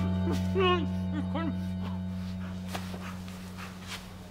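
A man gagged with tape crying out in several short muffled moans, each rising and falling in pitch, which stop after about a second and a half. Beneath them is a low steady music drone that slowly fades.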